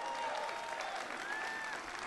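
Audience applauding steadily, fairly quiet, with a few faint calls from the crowd over the clapping.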